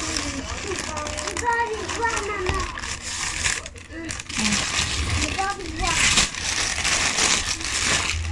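Crinkling and rustling of a pink plastic-and-paper bag being handled and opened, loudest about six to seven seconds in, over voices in the background.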